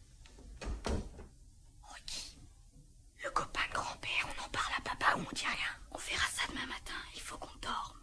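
A soft thump about a second in, then hushed whispering voices for the rest of the time.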